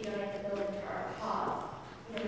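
Stage dialogue: an actor's voice in a hall, trailing off in the first half-second, then a short rushing noise about a second in.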